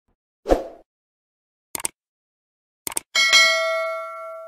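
Subscribe-button animation sound effects: a short thud, then two quick double clicks, then a bell chime that rings on and slowly fades.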